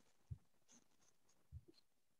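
Near silence: room tone, with two faint low thumps, one about a third of a second in and one about a second and a half in.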